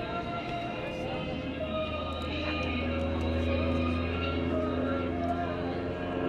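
Music with singing played over an airshow public-address system. Beneath it runs a steady low drone, louder around the middle, from the engine of the Super Chipmunk aerobatic plane overhead.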